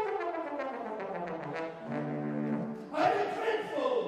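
Solo trombone playing a run of notes that falls in pitch, then holding a steady low note. A man's voice comes in near the end.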